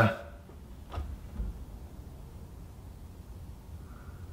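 Quiet room tone with a single faint click about a second in and a soft low bump just after, small handling noises.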